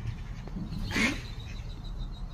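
A single short, quack-like animal call about a second in, over a steady low background hum.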